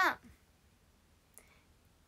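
A spoken word ends right at the start, then near-silent room tone with a single faint, short click about one and a half seconds in.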